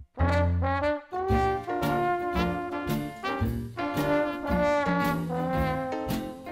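Trombone playing a held, melodic line in a swing jazz tune, with the band's accompaniment underneath. The music drops out for a split second at the very start, then comes straight back in.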